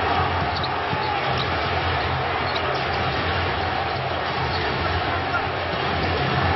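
Steady arena crowd noise during live basketball play, with the ball bouncing on the hardwood court as it is dribbled.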